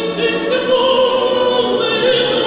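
Two female soloists singing a Ukrainian folk-song arrangement in held notes, accompanied by an orchestra of folk instruments led by plucked strings.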